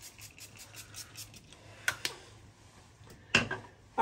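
Eau de toilette spray atomizer puffing faintly onto the neck, followed by a sharp click about two seconds in and a louder knock near the end.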